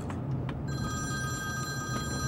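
A phone ringtone: a steady chord of high tones starting a little under a second in and ringing on, over the low steady hum of a moving car's cabin.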